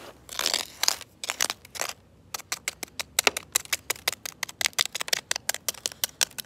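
Plastic cutlery stabbing and scraping into dirt: a longer scrape at first, then quick short strikes, about five or six a second, from about two seconds in.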